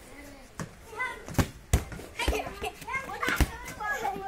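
Children calling out while playing football, with about four sharp thuds of the ball being struck, the loudest about a second and a half and three and a half seconds in.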